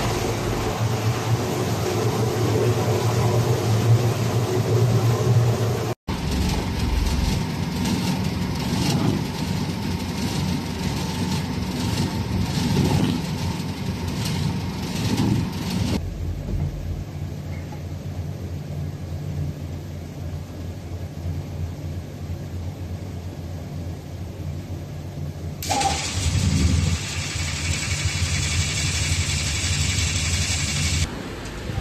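Industrial paddle mixer for PVC ball material running with a steady low motor hum. The sound changes abruptly several times. From a few seconds before the end a louder hiss is added.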